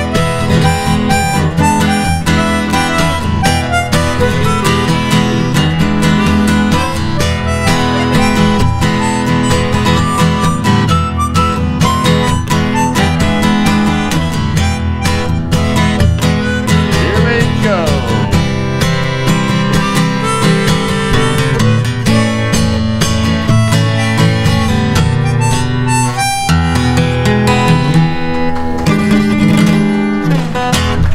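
Harmonica solo over a strummed acoustic guitar, with the harmonica carrying the melody and the guitar keeping a steady rhythm.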